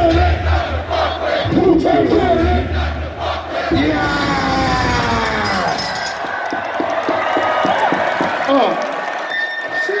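Hip-hop concert crowd shouting along over a heavy bass beat. About four seconds in the beat drops out under falling sweeps in pitch, then the crowd cheers with sharp claps and shouts.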